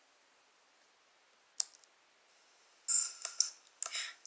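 Near silence, then a single sharp click about one and a half seconds in, followed near the end by a quick run of short clicks.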